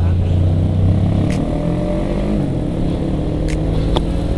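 Traffic engine noise. A deep steady drone from a heavy truck alongside drops away about a second in, as a sport motorcycle pulls off and its engine note rises.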